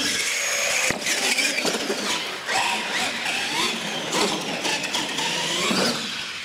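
Electric motors of radio-controlled monster trucks whining, rising and falling in pitch as the throttle is worked. A few sharp knocks come through, about a second in and again near the end.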